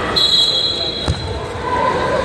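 Referee's whistle blown once, a steady shrill tone lasting under a second, signalling the end of a wrestling bout by pin. About a second in comes a single thump, with spectators' voices around.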